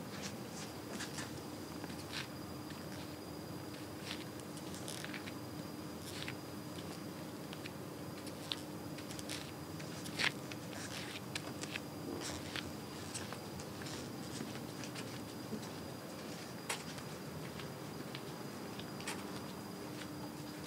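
Footsteps of six-inch clear-platform high heels walking on carpet: faint, irregular soft taps and clicks.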